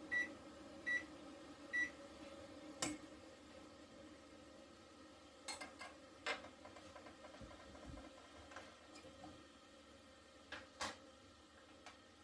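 Three short, high electronic beeps in the first two seconds, like buttons being pressed to set a kitchen timer for a two-minute cook, followed by a few scattered faint clicks and knocks.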